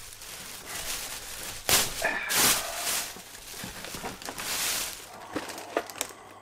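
Rustling and crinkling of bags and Christmas wrapping paper, in several short bursts, as a wrapped present is picked up and handled.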